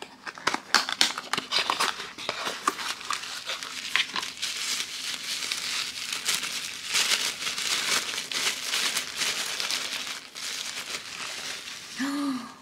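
A cardboard toy box is worked open with a few sharp clicks and tearing, then a thin wrapping is crinkled steadily as a small toy figure is unwrapped. The crinkling is densest through the middle of the stretch.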